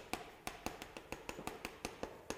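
Chalk writing on a chalkboard: a quiet, irregular run of small taps and short scratches, several a second, as characters are written.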